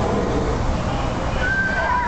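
A horse whinnying near the end: a high, wavering call that then slides down in pitch. Under it runs the riverboat's steady low rumble.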